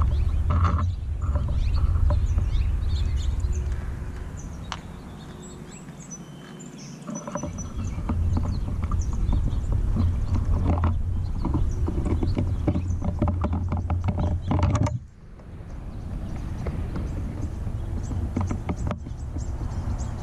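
Low, gusting rumble of wind buffeting the microphone. Over it come small clicks and rustles of hands working stiff lamp wires and wire connectors. The rumble eases off for a few seconds near the middle and cuts out briefly near the end.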